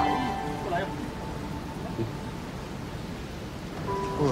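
Steady hiss of heavy rain from a sudden downpour. Soft background music fades out in the first second and returns near the end, with a light knock about two seconds in.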